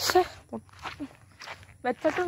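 Footsteps on a dirt and grass path, a few separate steps, with brief bits of speech at the start and end.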